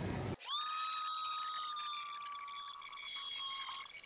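Oscillating multi-tool running with a steady high-pitched whine as its blade cuts across a thin strip of wood. The whine starts abruptly just under half a second in.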